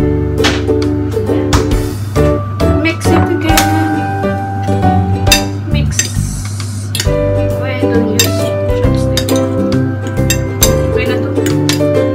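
Background music playing throughout, with metal forks repeatedly clinking against a bowl as pieces of marinated pork spare rib are tossed.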